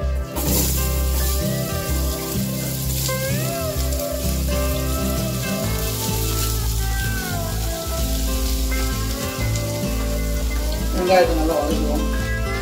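Sliced onions tipped into hot oil in an aluminium pot, sizzling as they hit the oil from about half a second in, over steady background music.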